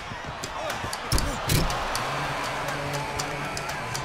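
Sound of a basketball game: a ball bouncing on a court, heard as repeated sharp impacts with heavier thumps a little over a second in, over crowd noise and background music.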